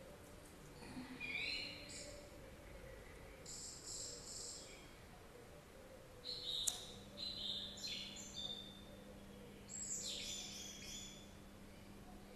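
Faint birdsong: short high chirping phrases come and go several times, with a single sharp click about two-thirds of the way through.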